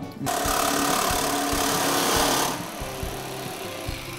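Jigsaw with a metal-cutting blade sawing through the thin zinc base of a washtub. It starts a moment in, is loud for about two seconds, then carries on more quietly.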